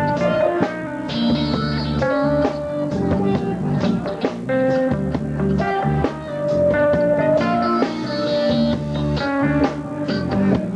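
Reggae band playing live without vocals: an electric guitar carries sustained melodic notes over a bass line and drum kit.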